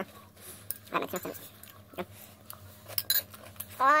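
A metal spoon clinking against a bowl a few times while eating cereal, with a brief vocal sound about a second in.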